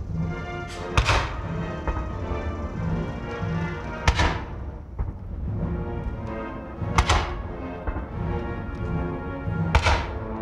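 A military band plays a national anthem while ceremonial salute cannons fire shot after shot, about three seconds apart, four times. Each report cuts through the brass and rings out over the music.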